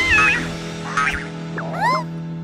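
Cartoon sound effects over background music: a held whistle-like tone wobbles and cuts off early, then two short squeaky rising-and-falling character vocalisations follow, about a second apart.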